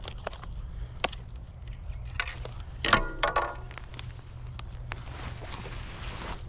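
Handling noises: scattered knocks and rustles as a wooden garden stake is pulled up beside a potted plant, with a louder clatter about three seconds in. Under it runs a steady low wind rumble on the microphone.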